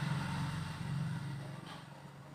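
A low, steady engine drone, like a passing motor vehicle, fading away near the end.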